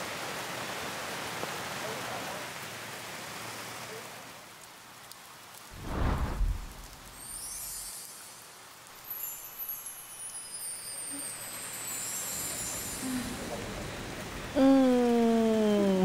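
Steady rain hiss that fades after about four seconds, then a low thud about six seconds in and a faint high sound gliding downward around ten seconds. Near the end a voice calls out, its pitch falling in a long slide.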